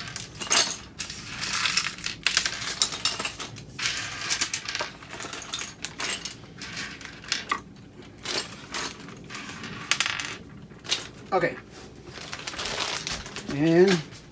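Small metal screws and fittings clinking as they are gathered by hand and dropped into a clear plastic hardware bag, which crinkles as it is handled. The clinks come as many short, irregular clicks, with stretches of crackling from the bag.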